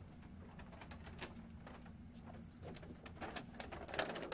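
Faint steady low hum of the room, with scattered small clicks and rustles from people handling clothing and bags. The handling grows busier near the end.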